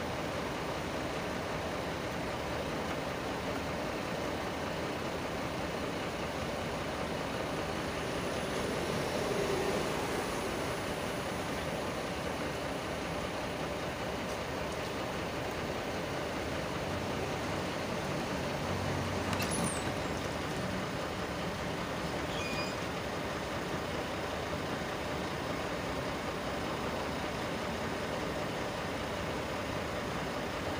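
Steady background rumble of vehicle engines and traffic, unchanging throughout, with a short sharp click about two-thirds of the way through.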